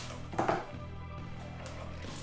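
Background music with steady low sustained tones, and one brief knock about half a second in.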